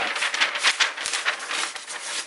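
A long sheet of old, stiff paper rustling and crackling as it is handled and rolled onto its spool, a dense run of crisp rustles that thins out near the end.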